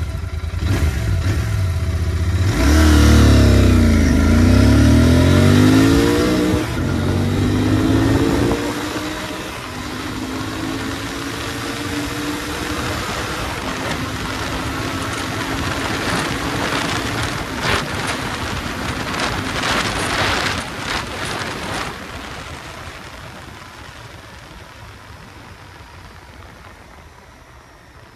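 Royal Enfield Continental GT 650's parallel-twin engine under hard full-throttle acceleration: it climbs in pitch and drops back at each gear change in the first several seconds, then holds a steady high-speed drone with rushing wind. The sound falls away gradually over the last few seconds.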